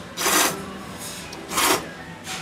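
Ramen noodles slurped into the mouth in two loud, short slurps, just over a second apart.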